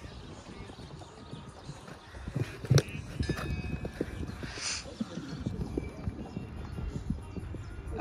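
Hoofbeats of a grey show-jumping horse cantering on a sand arena: a run of soft, irregular thuds, with one sharper knock a little before three seconds in.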